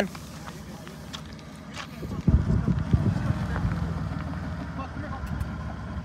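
2002 Toyota Tacoma's engine and drivetrain pulling the truck forward on loose dirt: a low rumble that swells about two seconds in, with a couple of knocks as it starts, then eases off near the end.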